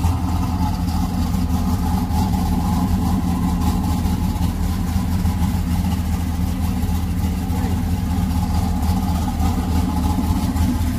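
A car engine idling steadily, low and even, with no revving.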